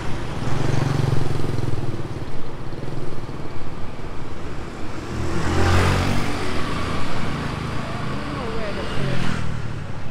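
Street traffic with motor scooters riding past close by. One scooter passes loudest about halfway through, rising and fading away, with a lighter pass near the end.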